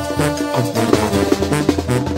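Mexican carnival banda playing live: brass over a held bass line, with drums.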